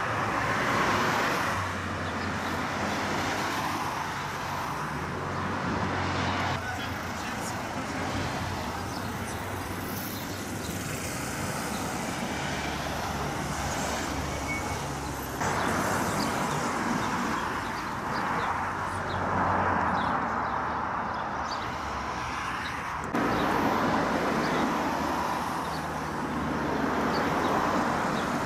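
Road traffic noise: cars driving past on a busy street, with faint voices underneath. The level jumps abruptly a few times.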